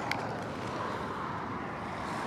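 Steady low rumble of traffic on the adjacent highway, heard outdoors, with a small tick right at the start.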